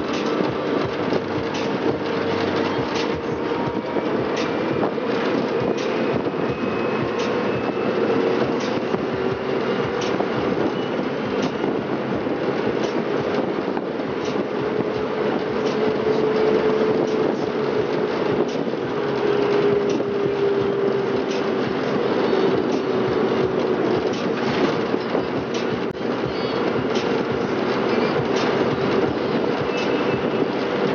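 Cabin noise of an electric-converted 1957 VW Type 2 Samba bus on the move: steady road and wind noise with frequent body rattles and clicks, and a faint motor whine that slowly rises and falls in pitch with speed.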